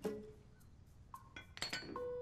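Small metal hand dumbbells set down on a hard floor, clinking and ringing briefly in the second half. A plucked-string music cue sounds once at the start and comes back at the end.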